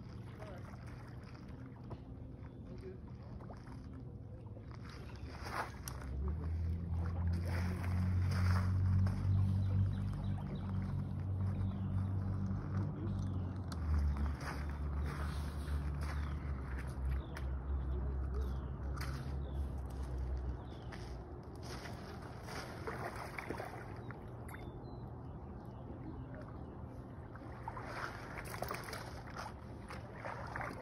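A paddlefish snagged on a heavy rod is fought and reeled in, then dragged splashing through the shallows near the end. A low motor drone rises about six seconds in, drops in pitch around fourteen seconds and fades out about twenty seconds in.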